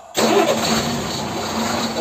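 Steady engine-like running noise with a low hum that starts abruptly just after the start.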